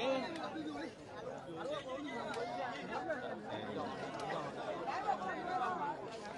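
Several people talking over one another: background chatter of voices, with no single clear speaker.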